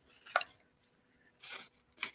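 Handling noise as a gem tester is taken up: one sharp click about a third of a second in, then a brief soft rustle about halfway through.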